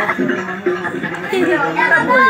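Several people talking at once: overlapping, indistinct chatter.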